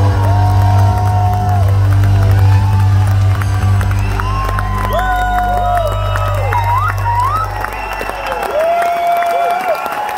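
A live band holds the song's final sustained chord, which cuts off about eight seconds in, while a large audience cheers, whoops and applauds over it.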